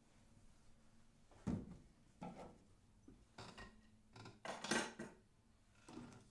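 A handful of irregular knocks and clatters, like small hard objects being handled and set down, with the loudest cluster of them near the end.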